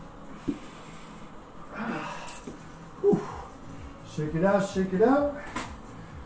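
A man breathing hard between exercise reps, with a short grunt-like exhale about three seconds in. A man's voice follows for the last couple of seconds.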